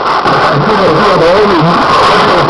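Shortwave AM broadcast on 6175 kHz heard through a receiver's speaker: a man talking, barely intelligible, buried under steady loud static hiss, the weak-signal sound of a distant station received at night.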